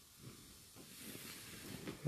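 Quiet room tone: a faint, steady hiss with a few soft, small noises.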